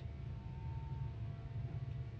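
Quiet pause: a low steady hum of room or recording noise, with a few faint sustained tones above it.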